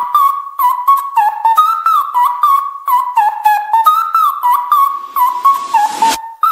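Flute ringtone melody: a single flute line of short notes, many sliding up or down into pitch, over a light clicking percussion beat.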